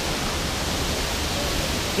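Steady rush of a waterfall, an even wash of noise with no distinct events.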